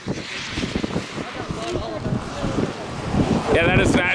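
Strong wind rushing and buffeting the microphone, in uneven gusts, with faint voices underneath. A man starts talking near the end.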